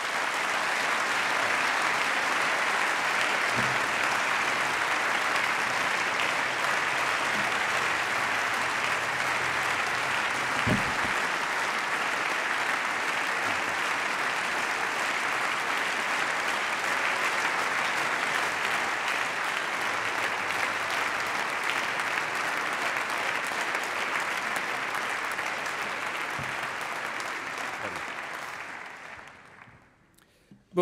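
Applause from the members of parliament filling the plenary chamber after a speech, a dense, steady clapping that holds for nearly half a minute and dies away near the end.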